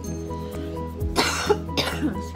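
Background music with two coughs close together, a little past the middle.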